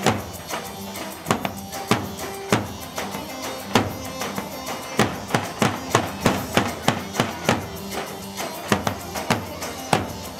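Instrumental halay dance music with sharp, loud drum strikes keeping the beat over a steady melody line. The strikes come faster for a few seconds in the middle.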